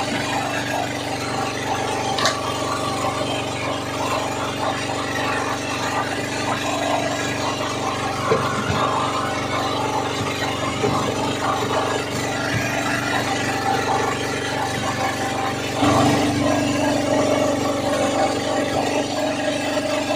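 An onboard engine running steadily at a constant speed, a continuous hum with a few faint clicks and knocks over it.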